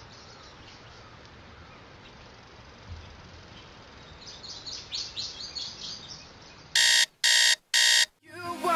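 An electronic alarm sounding three loud beeps near the end, preceded from about halfway in by a run of faint bird chirps over quiet room hiss.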